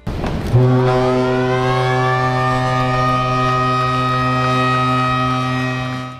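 A siren sounding to mark a ship's commissioning: one long, loud steady blast on a low tone, with higher tones gliding upward over its first two seconds before they level off.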